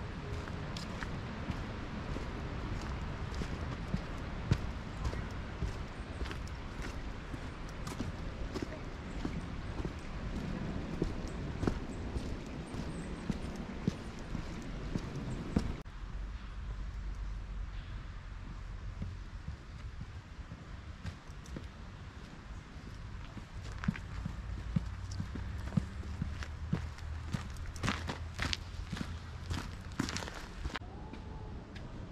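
Footsteps on a stone and gravel trail, an irregular run of short scuffs and clicks over a steady low rumble.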